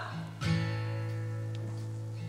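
Background music: an acoustic guitar chord strummed about half a second in and left to ring, slowly fading over a steady low note.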